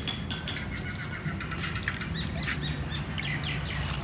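Birds chirping: a thin high whistled note, then a run of short, quick high chirps in the middle and second half, over a steady low hum.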